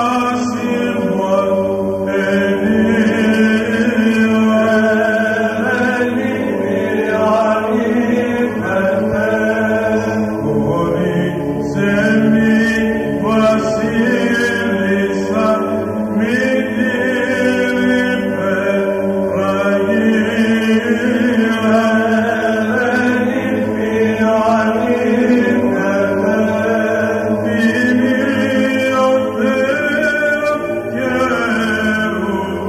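Byzantine chant of a Greek Orthodox hymn: voices sing a slow, melismatic melody over a steadily held low drone note.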